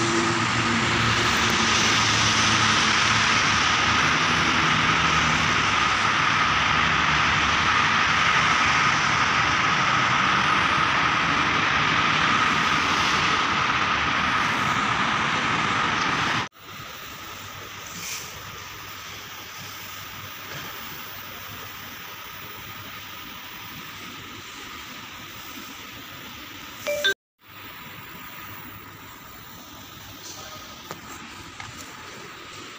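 Steady outdoor city traffic noise, loud at first, then much quieter after a sudden cut about halfway through. A brief loud bump comes just before a second cut near the end.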